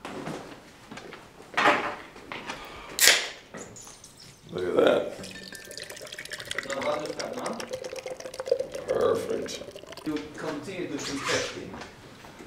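A can of stout cracked open with a short sharp hiss, then the stout poured from the can into a glass mug, a steady pour lasting several seconds.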